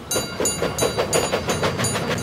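Steam locomotive chuffing as it pulls away, an even, rapid beat of about six puffs a second.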